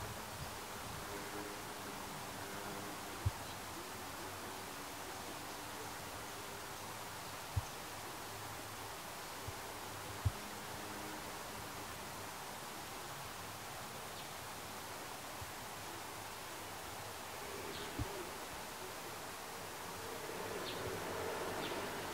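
Quiet outdoor ambience with the faint buzzing hum of a flying insect, coming and going. A few soft, dull low thumps stand out above it.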